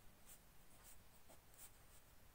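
Faint scratching of a ballpoint pen writing on notebook paper, in a few short strokes.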